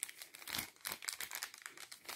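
Faint, irregular crinkling of a Little Trees air freshener's sealed plastic-and-foil packet as it is handled.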